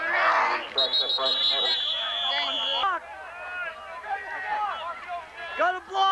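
A referee's whistle blows one steady, high blast for about two seconds, just after a tackle: the signal that the play is dead. Spectators are shouting around it.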